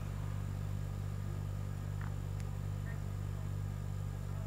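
A steady low hum with a faint hiss over it, with two faint ticks about halfway through.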